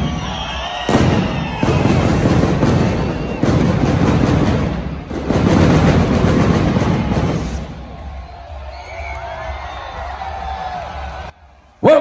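Fireworks bursting, with repeated bangs and crackle, over music and crowd noise. About eight seconds in the bangs fade, leaving quieter crowd cheering that cuts off suddenly just before the end.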